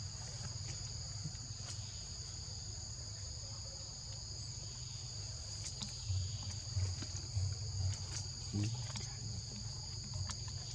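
Steady high-pitched drone of insects in the surrounding vegetation, two constant tones that never break. Under it is a low rumble, with a few soft low thumps in the second half.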